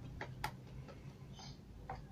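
A few faint, light clicks and taps of a paintbrush against small metal paint tins as the brush is dipped and worked in them, the sharpest about half a second in and another near the end.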